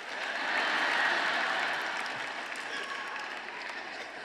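Large audience applauding, swelling to a peak about a second in and then slowly dying away.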